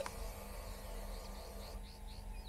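Quiet outdoor background with a few faint, short bird chirps, from about a second in and near the end, and a small click at the very start.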